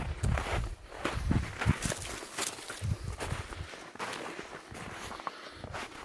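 Footsteps of a hiker walking through snow on a forest path, about two steps a second, growing fainter in the second half.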